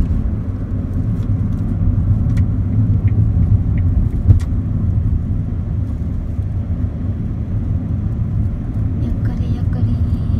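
Road noise inside a moving car's cabin: a steady low rumble of tyres and engine, with a few small clicks and one sharper knock about four seconds in.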